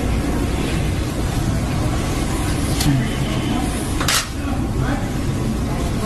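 Press-room room tone during a silence: a steady low hum with a few brief sharp clicks, the clearest a little after the middle.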